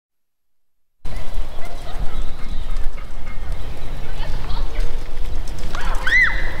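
About a second of dead silence, then steady outdoor background noise with a strong low rumble.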